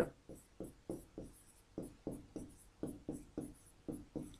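Pen writing on an interactive whiteboard: about a dozen short, quiet scratches and taps of the pen tip as a word is written in strokes.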